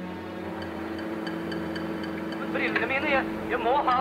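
Steady low machinery hum, with a man's voice speaking briefly from about two and a half seconds in.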